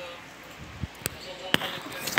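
Three sharp knocks in the second half, the last one the loudest, with a faint voice.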